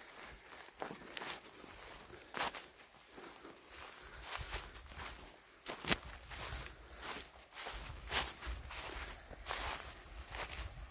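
Footsteps of a person walking on a dirt forest trail covered in dead leaves, in an uneven pace of crunching steps.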